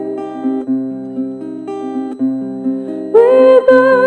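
Acoustic guitar picking a slow arpeggiated accompaniment, its notes entering one after another and ringing on. About three seconds in, a woman's voice comes in singing with vibrato, louder than the guitar.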